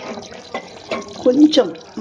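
Masala gravy bubbling as it simmers in an aluminium pot, a soft crackle of bursting bubbles, with a voice speaking briefly just past the middle.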